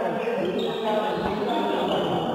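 Voices talking and calling out during a badminton doubles rally, with a thud of a player's feet on the court about a second in.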